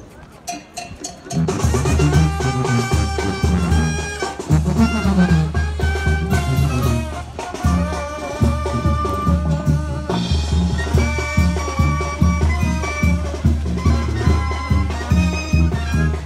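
A Mexican brass band (banda) starts playing about a second and a half in: deep bass notes pulsing steadily on the beat under drums and a brass melody.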